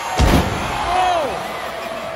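A wrestler landing from a leap off the top rope onto the wrestling ring: one heavy boom from the ring's canvas and boards. It is followed by crowd voices, with one shout falling in pitch.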